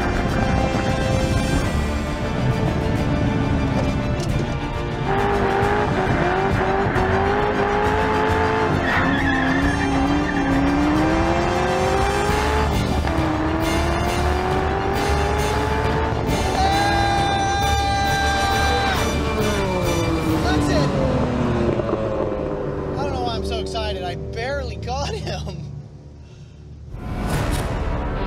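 Corvette Z06's 7.0-litre V8 revving hard under full acceleration, its pitch climbing through several upshifts and holding high before falling away as the car slows. Tyres squeal through a corner near the end.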